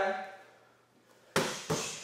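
Two gloved punches smacking into handheld focus mitts in quick succession, about a third of a second apart, in the second half.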